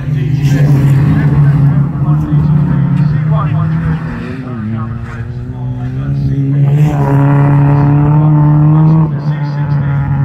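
Stockhatch autograss race cars' engines running hard at high revs, one steady strong engine note dominating. The note dips about four to five seconds in, then climbs and holds higher from about seven to nine seconds as a car accelerates past.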